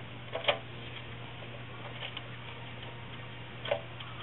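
Pet hermit crabs' shells clicking and tapping as they move around, a few sharp clicks about half a second in, around two seconds in and near the end, over a steady low hum.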